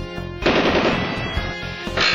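A loud, rapid rattling sound effect sets in about half a second in, over background music with a steady beat.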